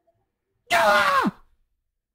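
A man's loud, sudden vocal outburst, a single exclaimed cry that starts high and slides down in pitch over about half a second, let out in excitement.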